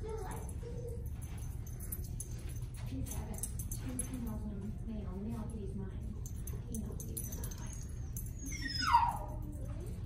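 A small terrier gives one short whimper that falls steeply in pitch, about nine seconds in, while searching. It sounds over a steady low room hum.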